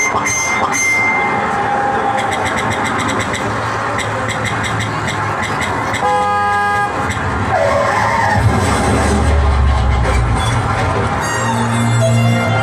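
Recorded soundtrack for a stage dance-drama, mixing music with traffic sound effects. A vehicle horn sounds for about a second halfway through, followed by a low rumble.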